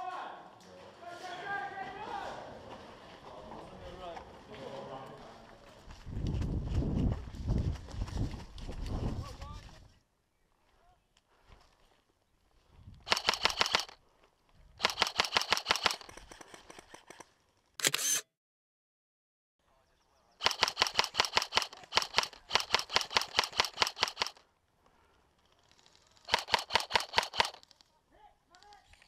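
G&G M4 airsoft electric rifle firing full-auto: five bursts of rapid, evenly spaced shots, one very short and one lasting over three seconds, with short pauses between them.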